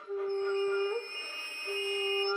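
Contemporary chamber music for flute, violin and voices: a held mid-range note ending in a short upward slide, a brief gap, then the same held note again near the end, over faint sustained high tones.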